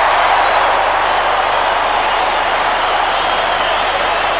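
Stadium crowd cheering and clapping for a goal just kicked, a steady wash of noise with no commentary over it.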